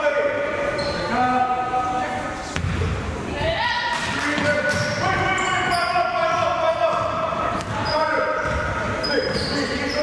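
A basketball bouncing on a hardwood gym floor during play, among voices of players and spectators echoing in a large gym.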